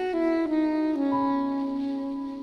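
Saxophone playing a slow melody that steps down through three or four held notes.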